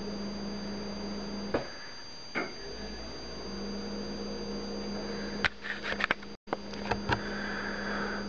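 Steady electrical hum and hiss, with a few light clicks and taps about a second and a half in and again twice a second later. A cluster of clicks follows later on, broken by a brief dropout where the sound cuts out completely for a moment.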